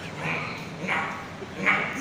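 A person's voice making three short, wordless vocal sounds, about half a second apart to start, then a louder one near the end.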